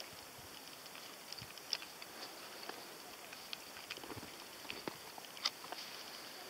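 Footsteps on loose volcanic rock: scattered, irregular crunches and clicks over a faint steady hiss, with the sharpest about a second and a half in and again near the end.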